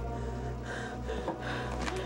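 A woman gasping in distress, two sharp breaths about a second apart, over a low, steady drone of score music.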